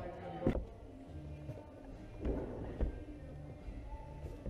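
A single thump about half a second in as a climber drops off the wall onto the padded bouldering floor, then music with steady low tones.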